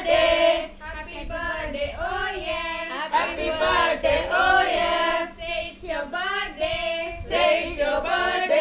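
High voices singing a melody, with a steady low hum underneath.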